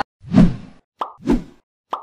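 Animation sound effects: two soft pops, each followed by a short sharp click, with near silence between them.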